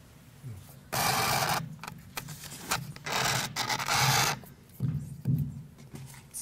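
Handling noise from a corded handheld microphone being gripped and fitted into its stand: two rough rasping bursts, one about a second in and a longer one at about three to four seconds, with shorter knocks between.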